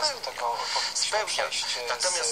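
Speech only: a person talking in Polish.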